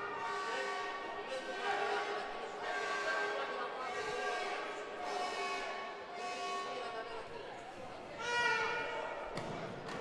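Echoing indoor sports-hall ambience during a six-a-side football match: players' and spectators' voices calling out, with thuds of the ball being kicked. There is a louder shout about eight seconds in, and a sharp kick near the end as a shot is struck and saved.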